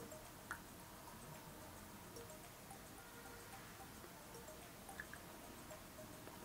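Near silence: room tone, with a faint single tap about half a second in.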